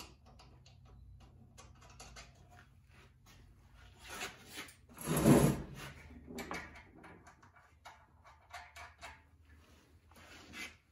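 Hardware and hand tools being handled on a wooden deck: scattered light clicks and rattles, with one louder clatter about five seconds in.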